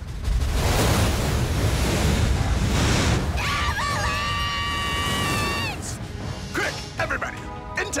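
Cartoon sound effect: a loud deep rumble with a rushing noise for about three seconds, then a long held high tone that cuts off. All of it sits over the soundtrack music.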